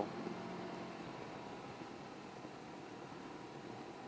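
Can-Am Ryker three-wheeler under way at a steady cruise: a low, even rush of wind and road noise with a faint steady engine hum underneath.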